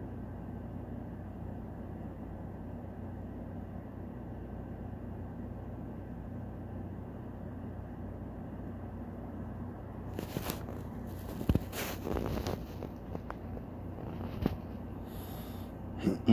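Steady low background hum with faint steady tones, like a fan or appliance running. From about ten seconds in it is broken by a few sharp clicks and short rustles.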